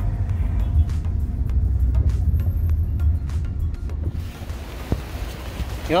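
Low rumble of road noise inside a moving Toyota taxi's cabin, with scattered small rattles and music in the background. About four seconds in it gives way to a steady, even hiss of wind and surf outdoors.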